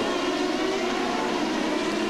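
Turbocharged V8 engines of CART Indy cars running at speed in a close pack, heard through a TV broadcast as a steady, high engine note.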